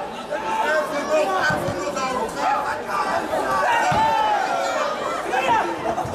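Fight crowd and cornermen shouting and chattering in a large, echoing hall, many voices overlapping, with a couple of dull thumps about a second and a half and four seconds in.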